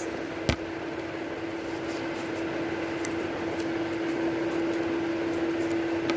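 Steady mechanical hum of a running room appliance such as a fan, with one pitched tone held throughout, and a single sharp click about half a second in.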